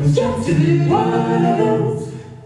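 An eight-voice a cappella group, with two each of sopranos, altos, tenors and basses, singing a jazz standard in close harmony. The voices hold full chords that move together twice.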